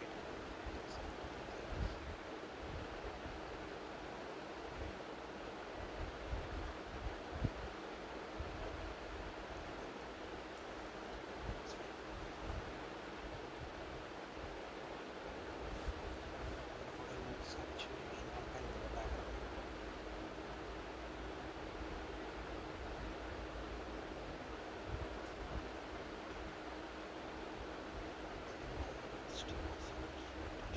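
Steady background hiss of the recording with a faint steady hum, and a few faint clicks scattered through.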